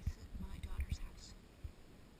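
A woman's voice, soft and close to a whisper, trailing off during the first second or so, with a few low thumps from the handheld camera moving.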